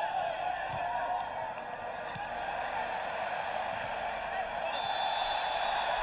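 Steady din of a football stadium crowd. A long, steady high whistle note comes in near the end, the referee stopping play for a free kick.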